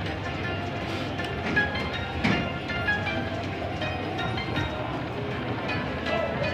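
Video slot machine running its free-spin bonus: the reels spin and stop with short chime tones and electronic bonus music, with a sharp click about two seconds in.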